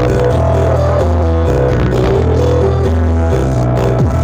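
Loud dance music played through a horeg-style carnival sound-system rig. Heavy sustained bass notes change pitch every half-second to second under a melody.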